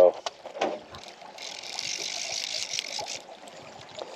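Fly reel's click-and-pawl drag ratcheting in a fast buzz for about two seconds, starting over a second in, as line runs through the reel while a small rainbow trout is played. A few light clicks come just before it.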